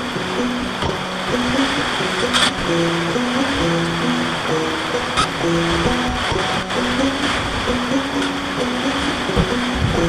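Background music: a melody of held notes over a steady hiss, with a couple of brief clicks.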